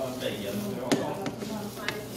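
A couple of sharp knocks, the loudest about a second in and a smaller one near the end, over murmured voices.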